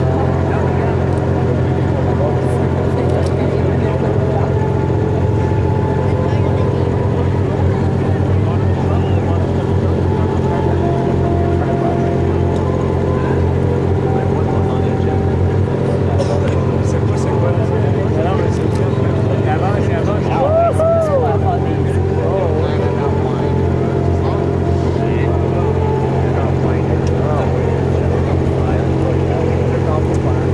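A steady, unchanging low mechanical drone, like a running engine, with people's voices faintly over it.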